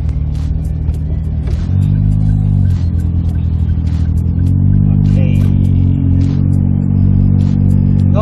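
Daihatsu Copen's small turbocharged three-cylinder engine pulling away: the revs climb, drop at a gear change just under three seconds in, then climb again and hold steady at cruising speed. Heard from inside the open-top car with the roof down.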